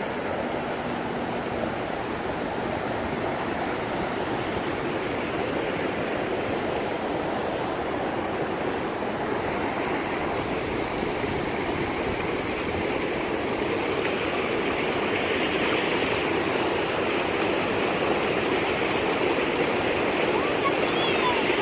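Fast-flowing Niagara River rushing and breaking over a rocky shore: a steady wash of water noise that grows a little louder toward the end.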